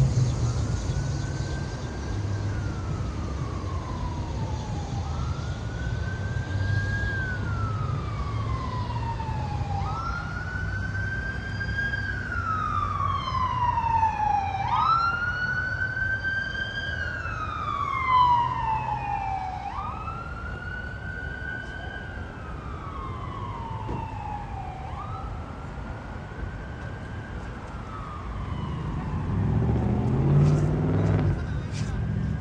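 An emergency vehicle's siren in a slow wail, about six cycles, each rising quickly and then falling slowly over about four seconds. It grows louder toward the middle and fades near the end, as if the vehicle comes closer and then moves off.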